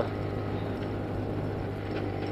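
Small motorcycle running at a steady cruise with an even engine drone, mixed with road and wind noise.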